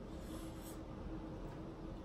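A quiet pause filled by a steady low room hum with a faint steady tone, and faint chewing as people eat scallops, with one small tick about half a second in.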